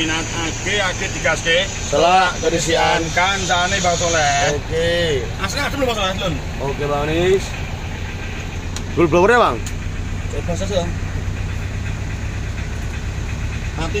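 Isuzu Panther diesel engine idling with a steady low hum, heard from inside the cabin under people talking.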